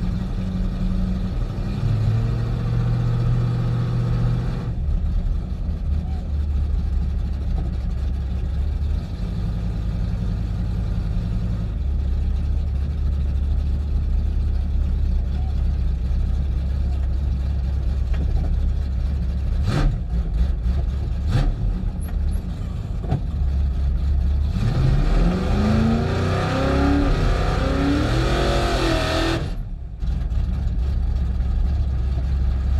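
Drag-race Dodge Dart's engine running at a steady low idle as the car creeps forward, with two sharp knocks about two-thirds of the way through. Near the end the engine revs up repeatedly in rising sweeps before the sound cuts off.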